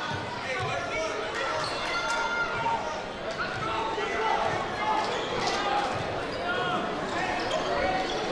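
Basketball dribbled on a hardwood gym floor, thudding repeatedly, with short high squeaks from the court and voices from players and the crowd.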